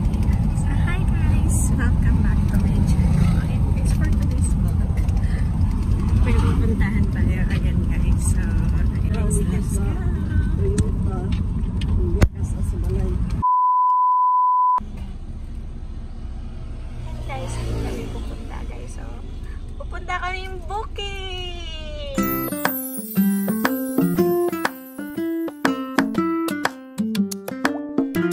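Low rumble of a moving car heard inside the cabin, cut off by a steady test-tone beep lasting about a second and a half. Quieter road rumble follows, and music with a stepping keyboard melody comes in past the middle.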